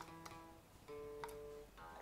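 Faint guitar music of plucked single notes: a couple of quick notes, then a longer held note about halfway through.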